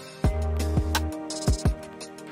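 Background music with a beat: deep kick drums with falling pitch about four times in two seconds, a held bass note and steady synth tones.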